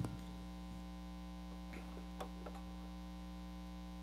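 Steady electrical mains hum in the sound-reinforcement and recording chain, with a few faint ticks.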